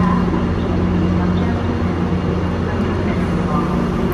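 Stationary Amfleet passenger train standing at a station platform, its onboard equipment giving a steady hum and rumble with a steady low tone.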